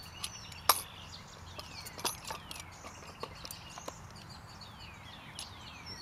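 Short clicks and knocks of metal fittings and the wooden gun carriage being handled during assembly, with one sharp knock near the start standing out. A bird gives repeated falling calls in the background.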